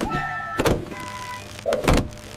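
Cartoon sound effects of a car's sudden emergency stop: thin steady high tones at first, a heavy thud about half a second in, and a louder thud near the end as the body is jerked against the seatbelt.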